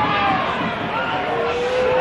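Football crowd at a small ground: voices and chatter from nearby spectators, with one drawn-out shout near the end.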